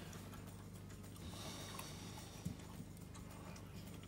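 Quiet room tone with a steady low hum and one faint tap about two and a half seconds in.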